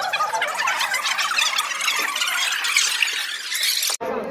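Several young women's voices reciting different monologues all at once, overlapping into a high-pitched jumble with no single voice clear; it cuts off abruptly near the end.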